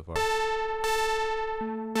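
Native Instruments Reaktor Monark software synthesizer, a Minimoog emulation, playing a bright, buzzy high A4 note. The note is struck three times, and each strike's brightness fades after its attack. A second, lower tone joins the note near the end.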